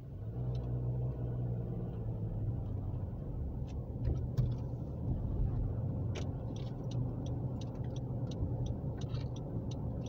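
A car's engine and tyre rumble heard from inside the cabin while driving, growing louder in the first second and then holding steady. From about six seconds in there is a run of light ticks, about three a second.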